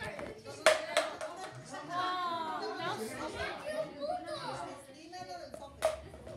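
Two sharp knocks, one under a second in and one near the end, with indistinct voices in between.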